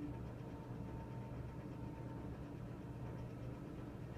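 Somfy tubular motor in a roller shade running steadily as it lowers the shade, a steady low hum with a faint high whine.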